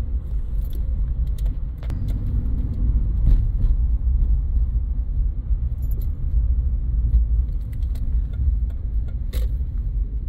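Car cabin noise while driving slowly: a steady low road-and-engine rumble, with scattered light clicks and rattles.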